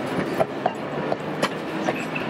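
Vintage railway passenger coaches rolling past, with a steady rumble and sharp, irregular clicks and knocks from the wheels passing over the rail joints.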